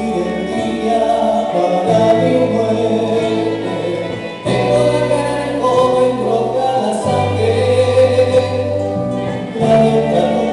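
Live Andean folk ensemble music: strummed charango and guitar, panpipes and electric bass, with voices singing together over a bass line that changes note every few seconds.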